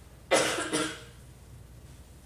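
A person coughs twice in quick succession, loud and close, about a third of a second in.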